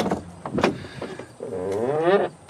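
Pickup truck door opened by its exterior handle: a latch click, then a second click as the door swings open.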